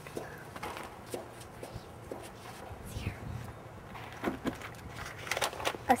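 Scattered footsteps and shuffling on outdoor paving as people move into place, over a faint low hum and faint background voices; a girl starts speaking at the very end.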